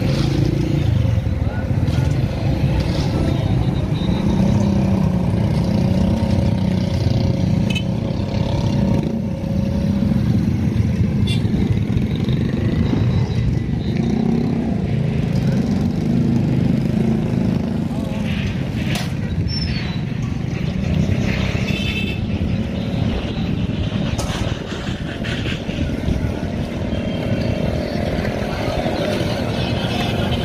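Steady low rumble of an engine running nearby, with a few short clicks.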